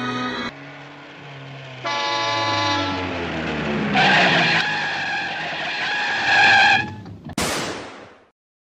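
Animated car sound effects: a car's engine note falling in pitch, then a loud, steady car horn blaring from about four seconds in, and a short harsh burst near the end.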